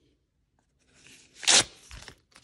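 A paper envelope being slit open with a letter opener: a short tearing of paper that starts about a second in and peaks sharply just after halfway.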